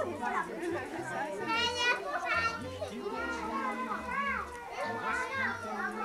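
A group of young children chattering and calling out at once, with one child's high-pitched voice standing out about a second and a half in.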